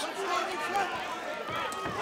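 Indistinct voices over the murmur of an arena crowd.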